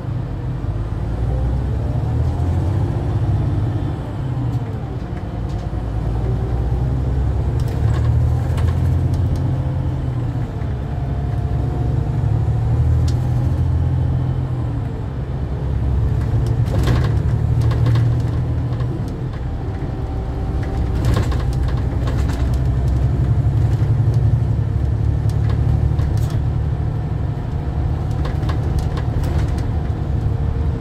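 Cabin sound of a National Express coach driving: a steady low engine and road drone, with the engine note rising and falling as the coach changes speed, and a few short knocks about a quarter, halfway and two-thirds of the way through.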